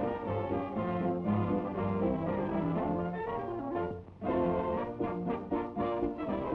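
Brass-led orchestral cartoon score playing a melody; it breaks off briefly about four seconds in, then resumes with short, clipped notes.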